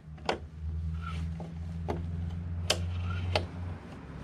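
A few sharp metal clicks as channel-lock pliers turn the crankshaft of an Echo PB-2100's small two-stroke engine, freshly freed from seizing with penetrating oil, over a steady low hum.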